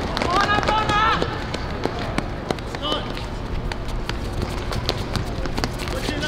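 Players running and kicking a football on an outdoor hard court, with scattered sharp knocks throughout and a steady low background rumble. A high-pitched shout from a player comes about half a second in and lasts under a second, with a short call near the middle.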